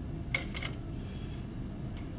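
A sediment sieve being set down and settled on the pan of a digital balance: a quick cluster of three or four light clicks about half a second in, over a steady low room hum.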